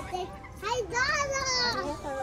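Young children's high-pitched voices at play: chatter and calling out.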